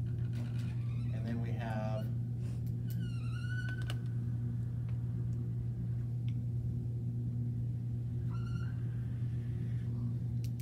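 Dry-erase marker squeaking against a whiteboard in two short, high squeals, about three seconds in and again near the end, with a few light ticks of the marker tip, over a steady low room hum.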